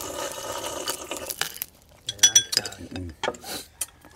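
A slurp from a porcelain bowl of rice porridge lasting about a second and a half, then a sharp clink of spoon or chopsticks on ceramic bowls a little after two seconds.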